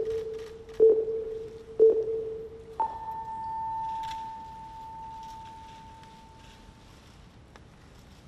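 Noon time signal: short pips a second apart, then a long tone about an octave higher that rings and fades over about four seconds. It marks the start of the moment of silent prayer.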